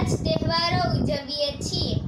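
A child's voice singing a short phrase, with held and gliding notes, which breaks off near the end.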